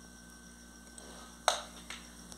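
Cooking oil poured quietly from a plastic bottle into an aluminium pot, then a sharp click from the bottle about one and a half seconds in, with a fainter click just after.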